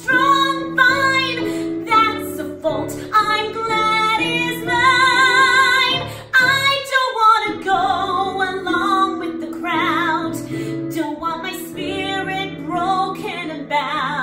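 A woman singing a musical-theatre ballad over keyboard accompaniment, sustaining notes with wide vibrato. About halfway through the low accompaniment drops out briefly.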